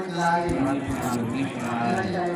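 A voice chanting Thai Buddhist blessing verses in long, drawn-out held notes that step from one pitch to the next.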